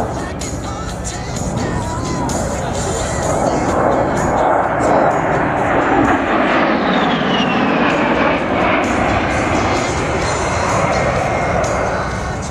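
The A-10 Thunderbolt II's twin General Electric TF34 turbofan engines on a fly-by. The jet noise swells as it passes and its high engine whine falls steadily in pitch as it draws away, with music playing underneath.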